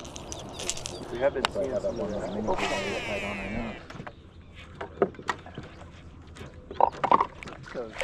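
A baitcasting reel being cast: a falling whine as the spool spins out, a few seconds in, then scattered clicks as the jerkbait is reeled and twitched back. Low talk can be heard under it.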